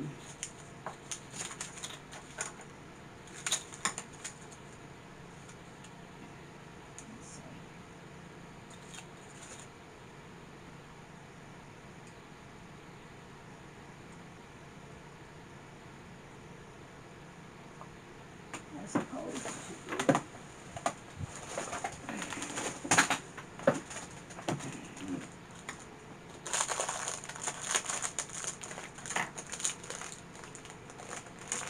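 Wooden popsicle sticks being handled: light clicks and clacks as the sticks knock together, with rustling. It is sparse in the first few seconds, quieter in the middle, then busier with clicks, knocks and rustling over the last dozen seconds.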